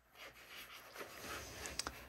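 Faint rustling of fabric being handled and arranged on a table, with a few light ticks about a second in and near the end.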